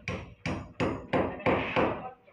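Hammer blows on the wall at a steel gate post: five sharp strikes at about three a second, growing louder.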